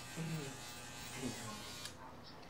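Corded electric hair clippers buzzing steadily while trimming hair at the back of the neck, stopping abruptly near the end.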